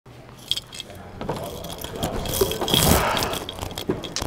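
A metal screen door rattling open and someone stepping out onto a wooden porch, with sharp clicks, knocks and a jangling rattle.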